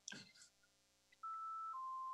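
Two-tone electronic beep from the video-conference call system: a steady higher tone lasting about half a second, then a lower tone for about half a second.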